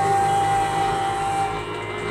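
Bamboo flute holding one long note that stops about three-quarters of the way through, over sustained chords on a bayan (chromatic button accordion).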